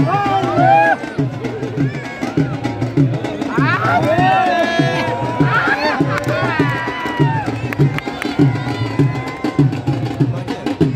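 Dhol drum beaten in a steady, driving rhythm of low, evenly spaced strokes, with voices calling out over it.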